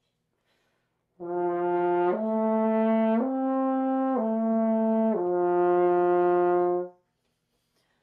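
Double French horn played on its open F side, with no valves, slurring up and back down the natural arpeggio: five connected notes (F, A, C, A, F), each held about a second, the last about two seconds, then cut off.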